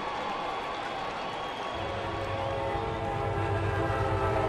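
Ballpark crowd noise, then about two seconds in a loud, sustained horn-like chord of several steady tones starts and holds.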